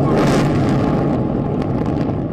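Explosive demolition of twin high-rise towers: a loud, steady rumble of the blast and the collapsing concrete, with a few sharp crackles about a second and a half in.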